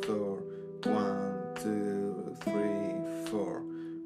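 Nylon-string classical guitar fingerpicked on its open strings, the notes of an open E minor chord plucked singly, a little under a second apart, each left to ring.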